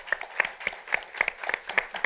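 Audience applauding: a dense, irregular patter of many hands clapping.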